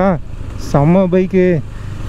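Speech over the low, steady running of a KTM 390's single-cylinder engine while riding.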